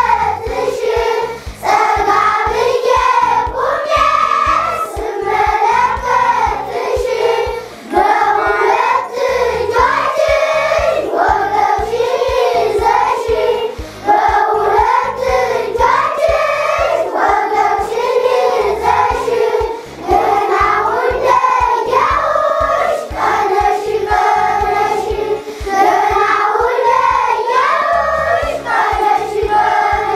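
A class of young schoolchildren singing together in unison, the song running in phrases with short breaks about every six seconds.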